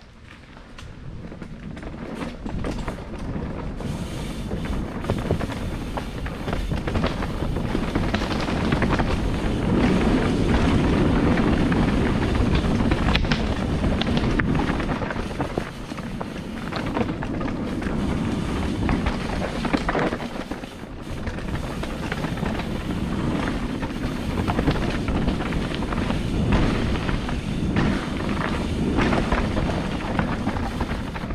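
Mountain bike being ridden down a dirt singletrack trail, heard from a camera on the rider. Wind rushes over the microphone and the tyres roll on dirt, with frequent knocks and rattles from the bike over bumps. The noise builds over the first several seconds as speed picks up, then stays loud with rises and dips.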